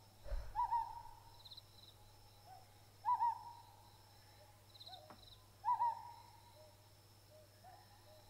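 An owl hooting in a forest ambience: three short single hoots, one about every two and a half seconds, with faint high bird chirps in between.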